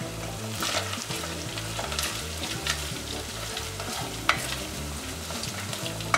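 Onions and whole spices sizzling as they fry in oil in a metal pot, while a wooden spatula stirs and scrapes them, with a few sharp knocks of the spatula against the pot, the loudest about four seconds in.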